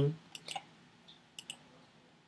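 A few faint, short clicks in a pause between words: a pair about half a second in and another pair around a second and a half in.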